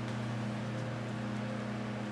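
Steady low hum with a faint hiss: room background noise, with no distinct handling sounds.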